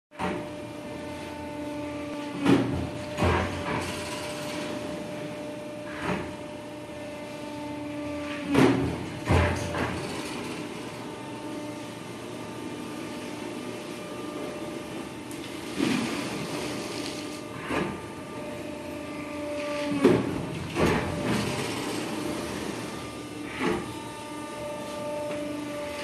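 A 100-ton roller cutting press for EPE foam sheet runs with a steady hum. Sharp knocks cut through it every few seconds, often in pairs less than a second apart, as the machine works through its cutting cycles.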